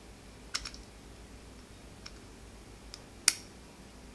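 Small metal clicks as a pointed tool pushes a plate into a Colt Mustang pistol slide, ending in one sharp, ringing metallic click about three seconds in as the plate goes home.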